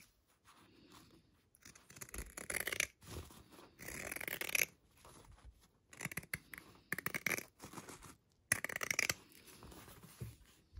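Pinking shears snipping through the sewn seam allowance of layered cotton fabric, in about five short runs of quick cuts with brief pauses between them.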